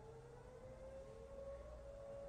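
Near silence: quiet room tone with one faint, thin tone that slowly rises in pitch.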